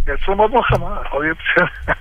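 Speech only: a man talking in Hebrew, his voice thin and narrow-band.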